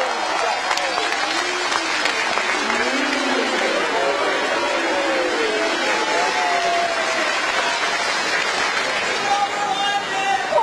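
A large audience applauding steadily, with scattered voices calling out over the clapping.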